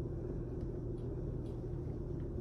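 Steady low background rumble, a room's constant noise with no distinct events.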